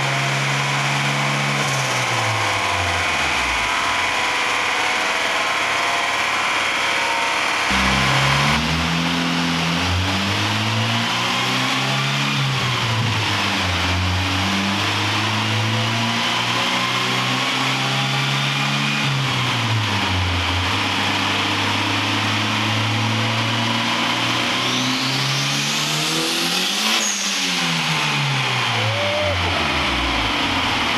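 Turbocharged LS-VTEC four-cylinder of an Acura Integra running on a chassis dyno, its revs dropping and climbing again several times rather than in one steady sweep, over a constant hiss. A high whine rises near the end.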